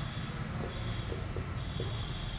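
Marker pen writing on a whiteboard: a quick run of short scratchy strokes starting about half a second in, over a steady faint high whine.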